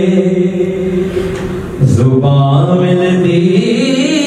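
A man reciting an Urdu naat unaccompanied, in long held melodic notes. There is a short pause for breath about halfway, then the voice comes back on a lower note and climbs again.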